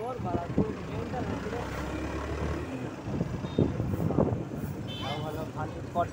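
People talking over the steady running and road noise of a moving vehicle.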